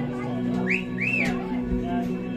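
Live indie rock band playing held guitar and bass notes, with two short whistles, each rising and falling, in the middle.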